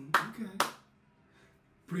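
Two sharp hand claps about half a second apart.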